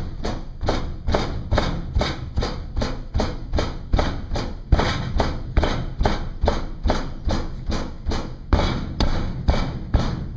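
Hammer ramming oil-bonded Petrobond foundry sand into a wooden flask: a steady run of dull thuds, about three a second.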